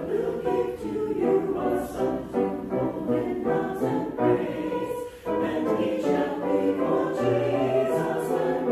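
Mixed church choir of men's and women's voices singing in parts, with a short break between phrases about five seconds in.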